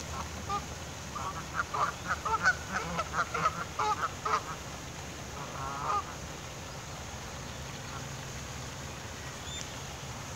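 Canada geese calling: a quick run of short honks for about three seconds, then one longer wavering call about six seconds in, over a low steady background hum.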